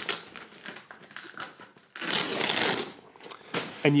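Fabric honeycomb grid being peeled off the front of a strip softbox: the fabric rustles and crinkles, then a louder rip of the hook-and-loop fastening lets go about halfway through, lasting just under a second.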